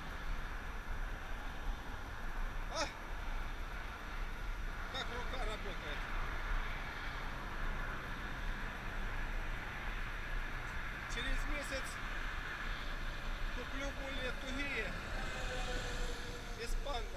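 Steady wind rumble on the microphone of a camera carried at a brisk walk, with a few sharp clicks and brief snatches of voice.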